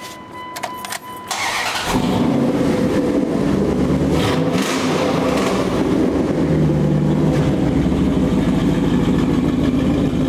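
Dodge Dakota pickup's engine starting through a newly fitted exhaust, with a 12-inch glass pack muffler and dual pipes out to chrome tips: a steady beep and a short crank, then the engine catches about two seconds in and settles into a steady idle.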